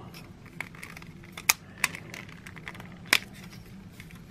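Plastic joints and panels of a Bandai Digivolving Spirits Agumon/WarGreymon transforming figure clicking as its hinges are shifted and folded by hand. There are a handful of short, sharp clicks, the loudest about three seconds in.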